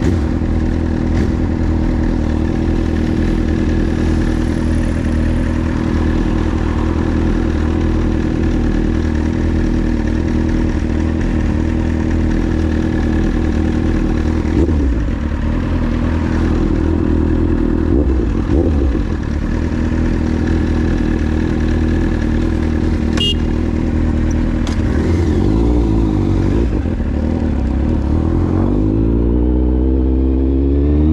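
Kawasaki Z750's inline-four through an SC-Project exhaust idling steadily, with a few short throttle blips in the second half and a sharp click about two-thirds of the way through. Near the end the revs climb as the bike pulls away.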